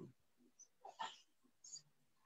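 Near silence: faint room noise, with a few brief faint sounds around the middle.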